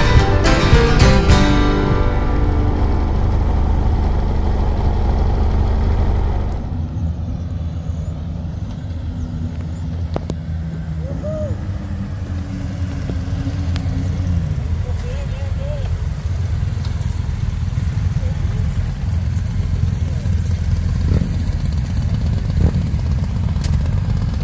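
Background music ends in the first couple of seconds over the rumble of a motorcycle being ridden. From about six seconds in, a group of motorcycles ride past one by one, their engine notes rising and falling as each bike passes.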